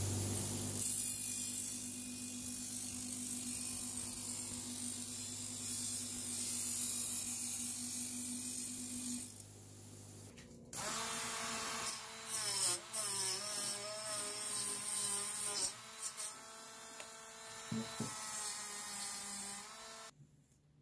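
Bench grinder running with a wire wheel scrubbing rust off the metal parts of a 1940s toy piano: a steady motor hum under a harsh scratching hiss. After a short quieter break about ten seconds in, the wheel runs again with a wavering pitch and uneven loudness as a piece is worked against it.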